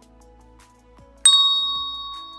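A single bright bell ding, the notification-bell sound effect of a subscribe-button animation, struck about a second in and ringing out as it fades, over quiet background music.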